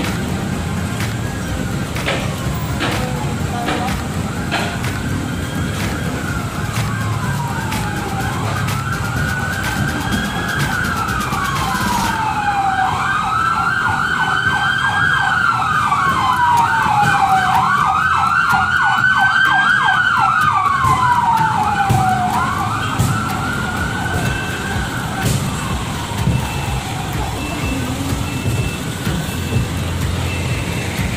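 Vehicle siren wailing, its pitch rising and falling every two to three seconds, with a faster warbling pulse layered over it through the middle stretch, over low street and engine rumble.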